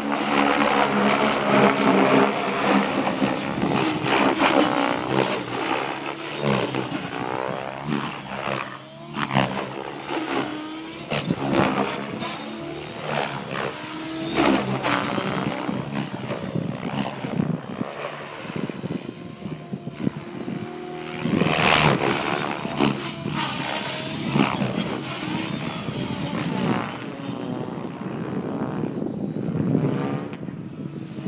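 Electric RC helicopter with 700 mm rotor blades and a Scorpion motor in aerobatic flight. The rotor blades whoosh and buzz while the motor whines, and both rise and fall in pitch and loudness as the model changes attitude and speed, with a strong surge about three-quarters of the way through.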